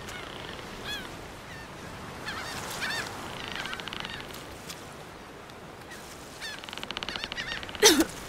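Seagulls calling: a few short arching cries in the first three seconds, with rapid buzzy rattles around the middle and again towards the end. A short, loud, sharp sound comes just before the end.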